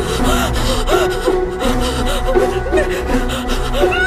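Tense horror film score with steady held tones, under a woman's frightened gasping breaths.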